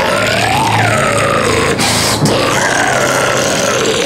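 Deep guttural death-metal growl, sustained and bending slowly in tone, over a loud heavy deathcore backing track.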